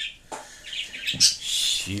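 Pet parrot chirping: a few short, high chirps.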